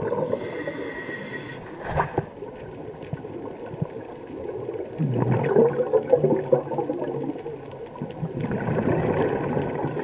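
Scuba diver breathing through a regulator underwater: a hissing inhale in the first couple of seconds, a long burble of exhaled bubbles from about five seconds in, then another hissing inhale near the end.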